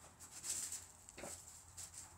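Wooden boards handled on a saw table, pressing a flattened HDPE tile: a brief rubbing scrape about half a second in, then a dull knock a little past the middle.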